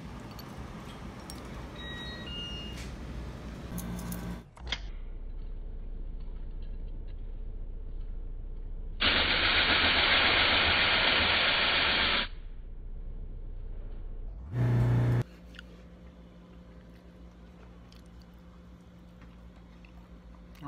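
Key-duplicating machine's deburring wheel brushing a freshly cut brass key: a loud, steady hiss lasting about three seconds in the middle, over the machine's motor hum. A short, loud buzz follows a couple of seconds later.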